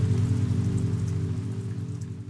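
Rain sound effect, an even hiss of falling drops, over a low, rapidly pulsing drone, the whole fading down toward the end.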